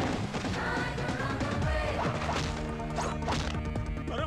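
Action-film fight sound effects: several crashes and hits, with a body crashing down in dust and rubble, over a dramatic background music score.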